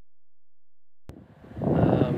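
Silence, then about a second in a sudden click as the outdoor recording cuts in, followed by wind rumbling on the microphone.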